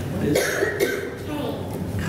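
A person's voice with a cough about half a second in.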